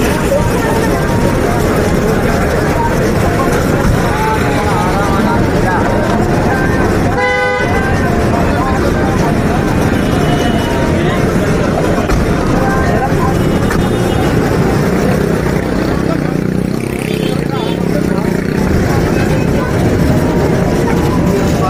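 Busy street ambience of crowd chatter and traffic, with a car horn honking once, briefly, about seven seconds in.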